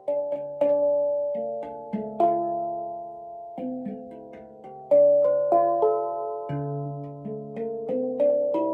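Handpan struck with mallets: a slow run of single ringing steel notes that start sharply and overlap as they fade, with the loudest strike about five seconds in.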